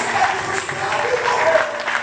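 Congregation applauding, with voices mixed in over the clapping.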